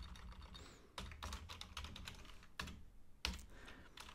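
Computer keyboard typing: a run of faint, irregularly spaced keystroke clicks.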